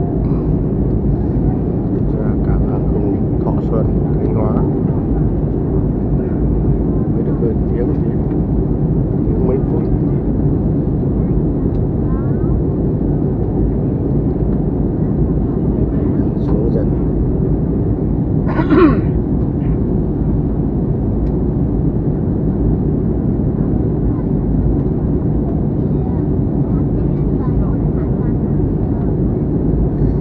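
Steady low drone of jet engines and airflow inside the cabin of an Airbus A320-family airliner during its descent towards landing. One short, slightly louder sound comes about two-thirds of the way through.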